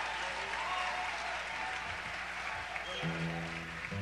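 Concert audience applauding and cheering after a band member is introduced. About three seconds in, an instrument on stage joins with a sustained chord.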